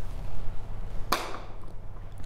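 A single short, sharp snap about a second in, over a steady low room hum.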